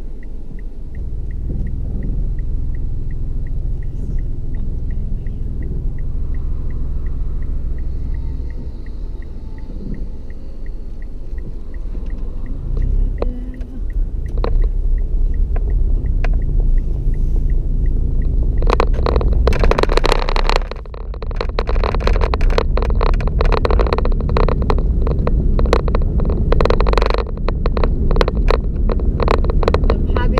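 Car cabin: a steady engine and road rumble, with a regular faint ticking a little under twice a second, typical of a turn-signal indicator, until about halfway through. From then on a much louder rushing noise full of crackles joins in.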